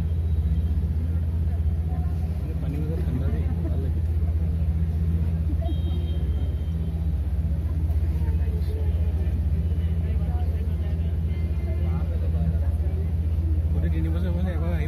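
A boat engine running with a steady low drone, with faint chatter of people's voices over it.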